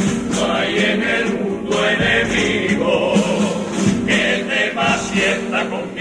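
A Cádiz carnival comparsa's male choir singing a pasodoble in several voices, accompanied by guitars.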